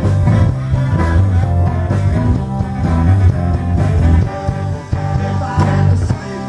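Live band playing amplified through a PA: electric guitars, bass and drums with a steady beat.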